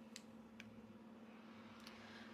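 Near silence: room tone with a faint steady low hum and three faint clicks.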